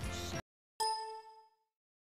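Received FM broadcast audio, a chanted voice with music, cuts off suddenly, and after a short silence a single bell-like ding rings and fades within about a second.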